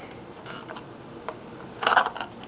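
Faint handling sounds of wooden matchsticks being worked into the hole of a paper covering on a plastic container: a few small ticks and scrapes, with a louder rustle near the end.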